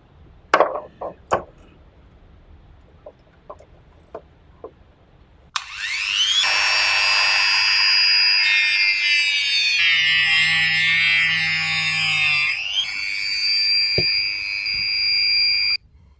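A few sharp handling clicks, then a rotary tool spins up with a rising whine about five seconds in and runs with a steady high whine as its cut-off disc cuts a wooden dowel. The pitch wavers under the load of the cut, and the whine cuts off suddenly near the end.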